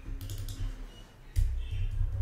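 Computer keyboard keys being pressed: a few light clicks, then heavier key strokes with a low thud about a second and a half in.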